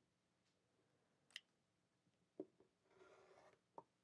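Very quiet handling at a cutting mat: a couple of faint clicks and a small knock as an acrylic quilting ruler and rotary cutter are set in place, then near the end a soft, brief scraping rush of a rotary cutter blade rolling through layered quilting fabric.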